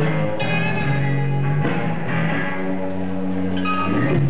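Live rock music: a band playing held, ringing chords led by guitar, the chords changing a few times.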